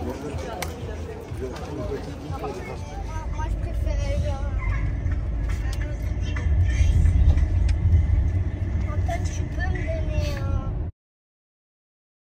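Unclear background voices over a steady low rumble of a vehicle, all cutting off abruptly about eleven seconds in.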